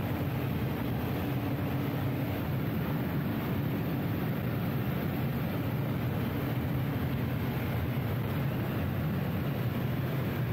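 Steady engine and road noise inside the cabin of a Nissan GT-R cruising at steady speed, a low, even drone with no revving or gear changes.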